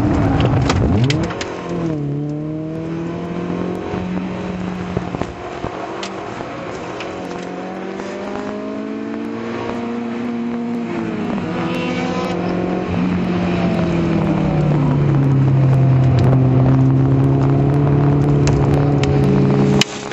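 Citroën Saxo VTS 1.6-litre 16-valve four-cylinder engine heard from inside the cabin under hard track driving. The revs drop and climb through gear changes in the first half, then hold high and steady, getting louder, for the last several seconds.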